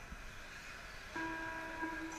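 Electric radio-control short-course trucks running on an indoor dirt track. A steady pitched tone comes in suddenly a little past halfway and holds for about a second.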